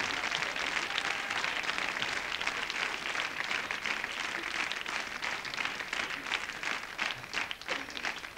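Studio audience applauding: dense clapping that thins out toward the end.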